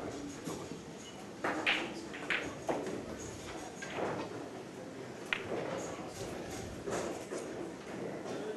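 Pool shot on a 9-ball table: a few sharp clicks of cue tip on cue ball and ball striking ball between about one and a half and three seconds in, then another single click a couple of seconds later, over the low murmur of a pool hall.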